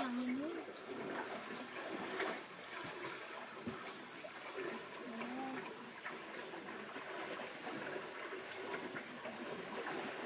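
A steady, high-pitched insect chorus droning without a break, with faint voices underneath.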